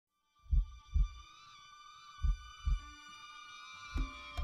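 Two double heartbeat thumps, lub-dub, about a second and a half apart, over a sustained high, slightly wavering tone.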